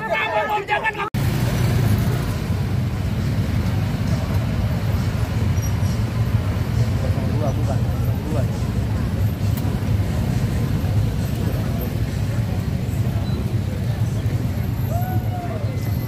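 Crowd chatter for about the first second, then after an abrupt cut a steady low rumble of street traffic and motor vehicles, with faint crowd voices underneath.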